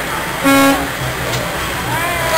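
A single short horn honk, one steady pitched blast of about a third of a second, roughly half a second in, over a low steady hum of street and crowd noise.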